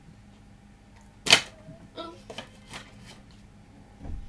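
A spoon knocks once sharply against a mixing bowl about a second in as a lump of margarine is knocked off it, followed by a few lighter clicks and scrapes of the spoon.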